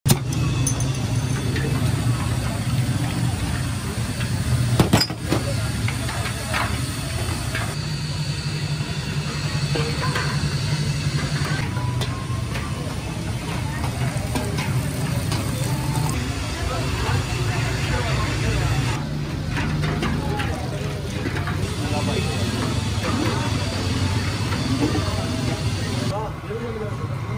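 Busy street-stall ambience: a steady low rumble under faint background voices, with scattered clinks and knocks and one sharp knock about five seconds in. The background changes abruptly several times where shots are cut together.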